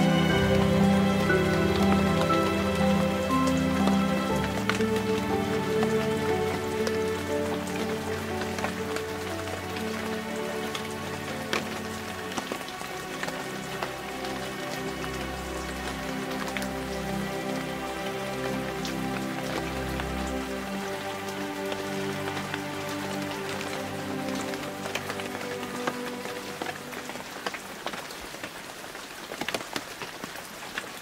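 Steady rain falling, with many fine drop ticks, under soft sustained meditation-music tones that fade away over the stretch, leaving mostly rain near the end.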